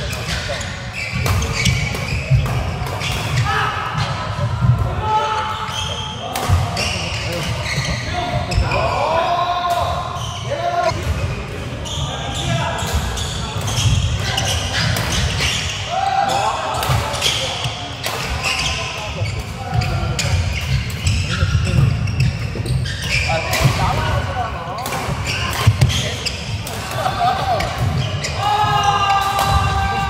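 Badminton doubles rally on a wooden court in a large echoing hall: frequent sharp racket strikes on the shuttlecock, thumping footsteps and shoes squeaking on the floor, with players' voices in the background.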